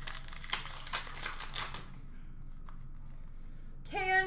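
Hockey trading cards and their foil pack wrappers being handled: a quick run of rustles, crinkles and card flicks in the first two seconds, then quieter shuffling.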